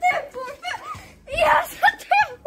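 Boys' voices in short excited calls and exclamations, loudest about a second and a half in.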